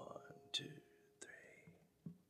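Near silence in a gap between music tracks: the last held note of a song dies away at the start, then a couple of faint short sounds.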